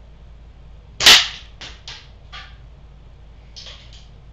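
.177 air gun firing a pellet: one sharp shot about a second in, followed by several fainter clicks and knocks.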